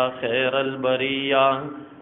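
A man chanting Arabic devotional verse in praise of the Prophet, in slow melodic recitation. He holds one long line on a steady low pitch that fades out just before the end.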